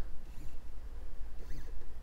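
Stepper motors of a Vevor S4040 desktop CNC router jogging the machine a short distance: a brief whine that rises and then falls in pitch about one and a half seconds in, with a few faint clicks over a low steady hum.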